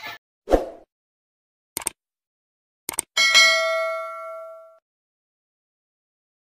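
Subscribe-button animation sound effect: a soft pop, two quick double clicks, then a notification-bell ding that rings out for about a second and a half.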